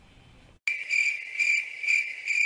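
Cricket-chirping sound effect, used as the 'awkward silence' gag: a steady high chirp pulsing about twice a second, cutting in suddenly about half a second in after faint room noise.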